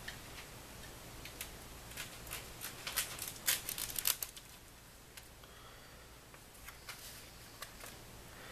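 Faint clicks and small knocks of household objects being handled, most of them packed together between two and four seconds in, with a few faint ticks later on: someone off camera fetching a knife.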